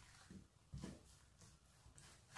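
Near silence, with a few faint soft scrapes of a silicone spatula stirring a thick ghee and milk-powder mixture in a nonstick pan.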